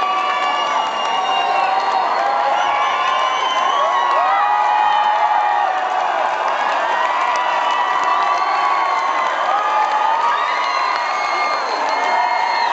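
Concert crowd cheering and shouting for a band taking its bow at the end of a live show, many high voices overlapping at a steady, loud level.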